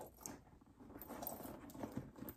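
Loose South African rand coins rattling faintly inside a fabric makeup bag as it is handled, a few scattered clinks over a soft rustle of the bag.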